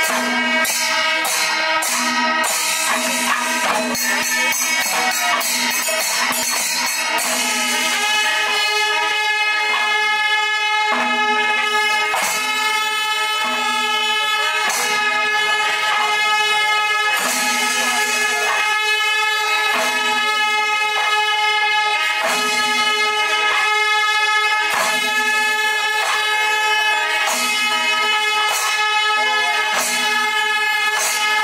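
Kerala panchavadyam ensemble playing: maddalam and timila drums with jingling ilathalam cymbals, and kombu horns sounding long held notes. The strokes are dense at first, then thin to a slower, evenly spaced beat about eight seconds in.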